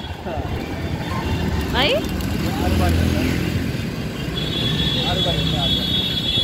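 Motorcycle engine running with road noise, heard from the pillion seat; the low engine hum is strongest about three seconds in. A thin, high steady tone joins a little past four seconds.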